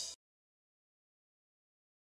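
Silence: the tail of a music cue dies away in the first instant, then dead digital silence.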